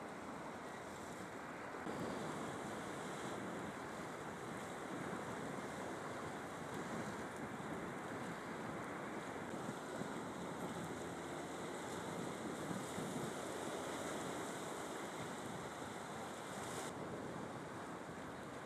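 Sea waves washing against a rocky shore with wind on the microphone: a steady rushing noise that shifts slightly about two seconds in and again near the end.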